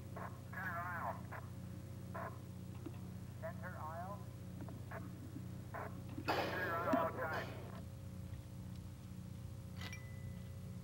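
Faint, indistinct voices in short snatches, with the loudest about six and a half seconds in, over a steady low hum.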